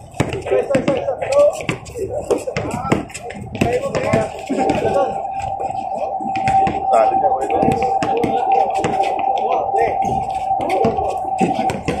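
Sounds of a basketball game: voices of players and onlookers, with the ball bouncing on the hard court and scattered knocks. A steady tone runs from about four seconds in until shortly before the end.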